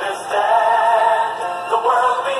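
Recorded music with a sung melody of long held notes, played back over the stream.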